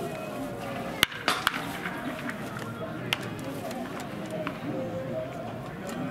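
Several sharp knocks from baseball practice, the loudest about a second in and three more within the next two seconds, over background voices.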